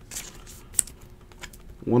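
Trading cards being handled and flipped in the fingers: a few light clicks and taps of card stock, the sharpest a little under a second in.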